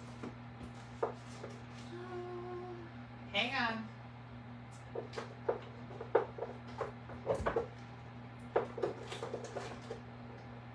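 A woman hums a short held note, then a wavering vocal hum, over a steady low electrical hum. Scattered small clicks and taps follow in the second half.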